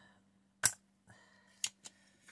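A spring-loaded desoldering pump snaps once, sharply, about half a second in, sucking solder off a stepper motor's pins on a circuit board. Two lighter clicks of the tools follow near the end.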